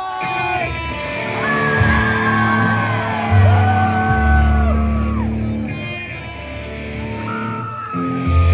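Live psychobilly band playing loudly in a large hall: electric guitar and upright bass, with held notes that slide in pitch and a voice yelling over the music. Heavy low bass notes come in about three seconds in.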